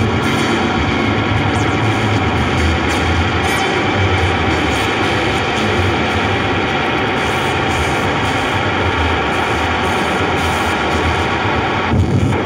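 Modular synthesizer playing a loud, dense, noisy drone: many held tones layered over hiss, with a heavy low hum and no beat.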